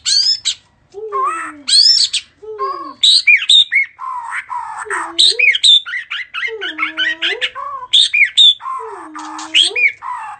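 A shama singing loud, varied phrases: low whistles that dip and rise, quick slurred high notes and harsh chattering, broken by short pauses.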